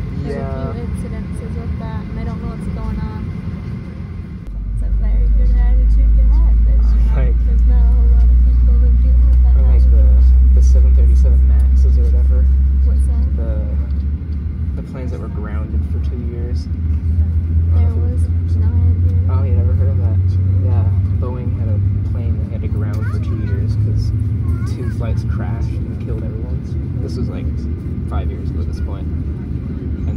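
Cabin of a Boeing 737-800 taxiing: a low, steady rumble from its CFM56 engines and rolling gear that swells sharply about four seconds in as the aircraft gets moving, then settles slightly higher in pitch around thirteen seconds, with passengers chatting quietly.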